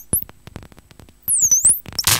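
Sparse glitchy live-coded electronic music from synthesizers: scattered sharp clicks, with a high-pitched synth sweep that dips and rises back about a second and a half in.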